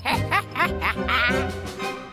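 A cartoon character's high, squeaky giggle: a quick run of short laughs over background music.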